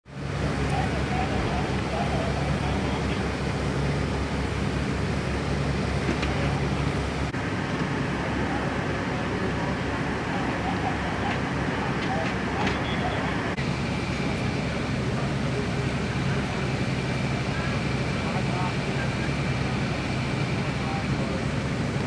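Fire engines running, a steady low engine drone, with faint indistinct voices. The background shifts at cuts about seven and fourteen seconds in.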